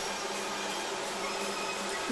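Steady background hum with an even hiss, unchanging throughout, with no distinct clicks or strokes.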